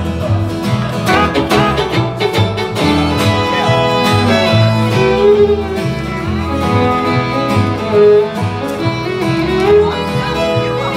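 Live country band playing an instrumental break: bowed fiddle and strummed acoustic guitar over a steady, pulsing bass line, with no singing.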